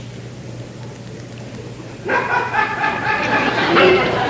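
Low steady hall hum, then about two seconds in a theatre audience breaks into laughter and chatter that carries on.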